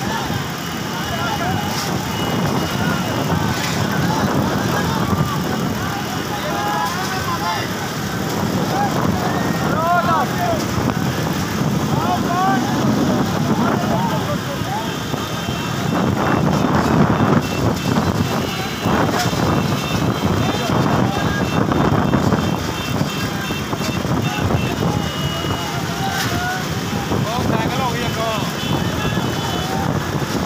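Several motorcycle engines running together, with men shouting over them throughout.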